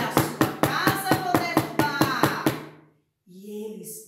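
Rapid, even knocking on a hard surface, about five knocks a second for under three seconds, acting out the wolf banging on the pigs' door, with a voice over it.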